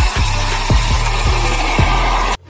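Electronic background music with a deep, sustained bass and a booming kick-drum beat, over a loud, even rushing hiss.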